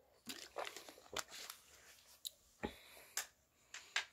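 Thin plastic water bottle crinkling and clicking in the hand as it is drunk from: a few faint, irregular crackles, with a soft knock about two and a half seconds in.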